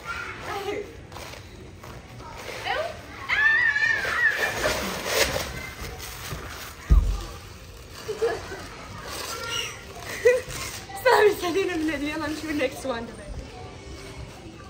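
People's voices and laughter, with a single low thump about seven seconds in.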